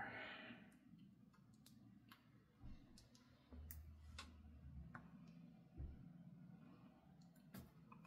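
Near silence with a few faint, scattered clicks and light taps from handling stamping supplies: a plastic glue stick cap dabbed on an ink pad and pressed onto a paper postcard.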